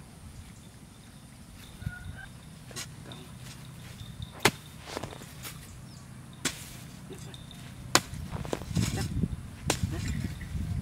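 Metal hoe blade chopping into dry earth: four sharp strikes about a second and a half to two seconds apart in the second half, with a rustle of loosened soil around the last ones.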